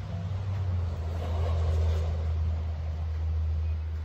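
A car engine idling: a steady low hum that drops slightly in pitch and grows louder about a second in, with a rushing noise that swells and fades over the next second or so.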